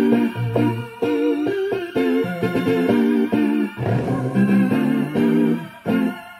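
Roland E-09 arranger keyboard played with both hands: a quick run of short melodic notes and chords over low bass notes, dying away near the end.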